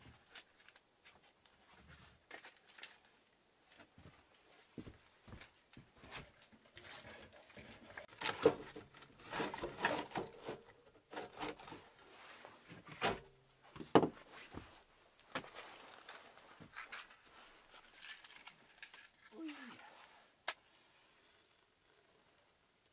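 Handling sounds at a small steel wood-burning stove while it is being loaded and lit: scattered clicks, clatter and rustling, with a few sharp knocks in the middle, the loudest of them standing out.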